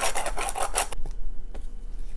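Orange peel being rasped across a fine stainless-steel rasp grater (zester) in quick back-and-forth scraping strokes, about six a second, which stop about a second in.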